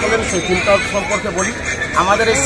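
A man's voice speaking close to a handheld microphone.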